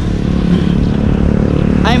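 Wind rumbling on the action camera's microphone while riding a road bike, with a small motorcycle's engine running close alongside.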